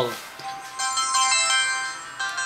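Mobile phone ringtone: a short electronic melody of held notes that starts about half a second in.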